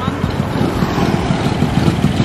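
Small motor scooter engines running hard as the scooters pull away and ride past, a steady rough engine noise.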